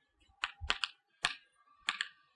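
Chalk writing a word on a chalkboard: a run of about five sharp, short taps as each stroke strikes the board.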